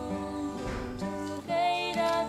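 Slow, gentle acoustic music played live: acoustic guitar with double bass and a female voice singing softly, growing louder about one and a half seconds in.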